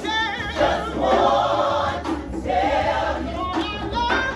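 A female lead vocalist sings into a microphone over a gospel choir, her voice wavering through a run near the start.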